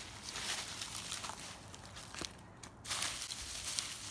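Dry leaves and plant debris of a compost pile rustling and crackling as they are scooped up by hand and tossed onto the heap, with a short lull about two and a half seconds in.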